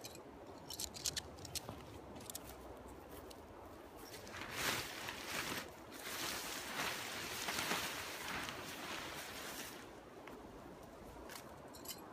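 Crunching, rustling handling sounds of a tent being staked out: a few sharp clicks and ticks early on, then a longer stretch of crunchy rustling from about four seconds in that stops near ten seconds.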